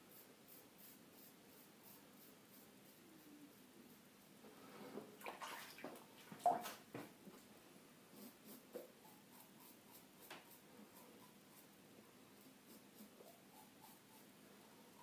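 Faint short scrapes of a Rubin-1 double-edge safety razor cutting lathered stubble on the cheek, in quick, evenly repeated strokes. A louder, noisier burst comes about five to seven seconds in.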